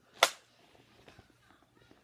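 A slingshot's rubber band snapping once, sharp and loud, a quarter second in, followed by faint handling rustles.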